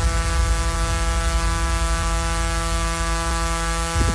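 A loud, held electronic tone with many steady overtones over a deep bass rumble, played through a large outdoor PA sound system.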